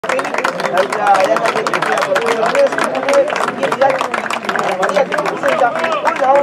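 Many voices shouting and calling over one another, with scattered hand claps.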